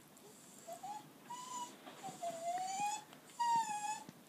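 Four-week-old puppy whining: a few high, thin squeaks, one drawn out and rising for about a second in the middle.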